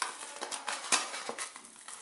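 Fingers handling a thin cardboard packaging sleeve: a run of small, irregular clicks and scrapes of card.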